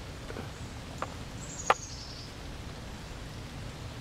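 Outdoor background noise with a bird giving a short falling run of high chirps, and two sharp clicks about a second and just under two seconds in, the second much louder.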